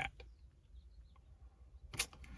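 A near-quiet pause in speech: low steady hum inside a parked pickup cab, with a few faint ticks and a short click near the end.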